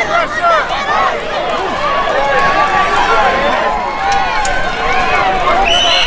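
Many voices shouting and calling over one another from the sidelines and field of a youth football game as a play runs. A steady, high referee's whistle starts right at the end.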